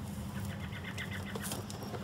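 Faint outdoor background of small birds chirping over a low steady hum, with a brief rustle about three-quarters of the way through as a foil-wrapped box is lifted.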